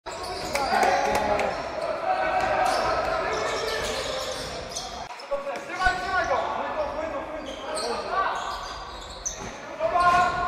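Indoor basketball game sounds: a ball bouncing on a wooden gym floor and players' voices calling out, echoing in a large sports hall, with a brief dip in level about five seconds in.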